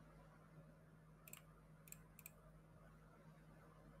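Near silence: a steady low hum with three faint, sharp clicks, the first just over a second in and two more close together a little later.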